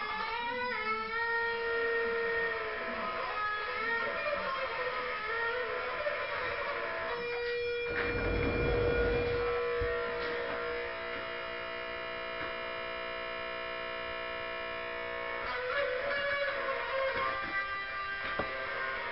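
Guitar music, mostly electric: lead notes bent in pitch, a low rumble about eight seconds in, then a chord held ringing for several seconds before the playing picks up again.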